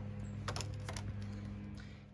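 A steady low hum with a few light clicks scattered through it.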